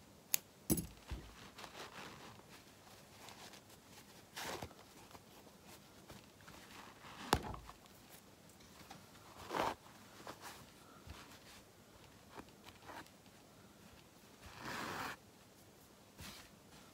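Quiet handling of a machine-quilted fabric piece as basting threads are pulled out: a couple of sharp scissor snips near the start, a click about halfway, then short rustles of fabric and thread being drawn through the cloth, the longest near the end.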